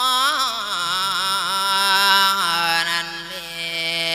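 A monk's voice singing a Thai 'lae' sermon chant through a microphone: long melismatic notes that waver in pitch early on, then settle into a steadier held note about two and a half seconds in.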